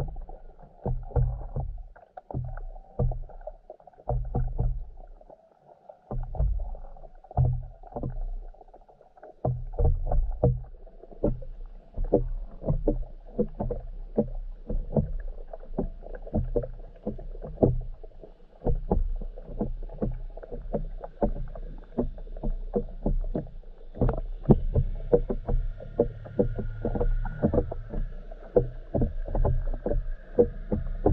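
Muffled underwater sound through a camera's waterproof housing: irregular low thumps and many short clicks as the water moves against it. About two-thirds of the way through, a faint steady high whine joins in.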